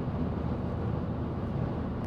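Steady driving noise inside a moving car's cabin, road and engine sound at an even level.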